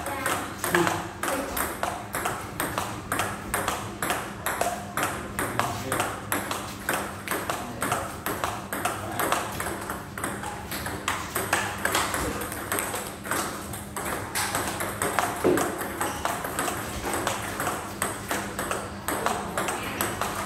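Table tennis forehand rally: the plastic ball clicks in a quick, even rhythm as it is struck by the paddles and bounces on the table, with no break in the exchange.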